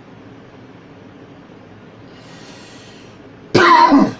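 A man coughs once, loudly and briefly, near the end, just after a faint intake of breath.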